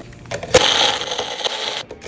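A Magic Bullet personal blender running, blending milk with dates, nuts and ice cubes. It starts with a click about half a second in, runs for just over a second and stops suddenly.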